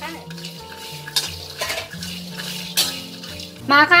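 Metal spatula scraping and knocking against a wok while whole garlic cloves are dry-roasted, in a handful of sharp strokes spread through the few seconds.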